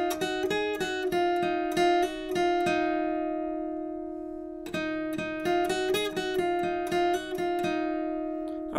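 Acoustic guitar tuned down a half step, playing a short lead phrase of picked single notes with hammer-ons against a note left ringing. The phrase is played twice, with a pause about halfway while the notes ring out.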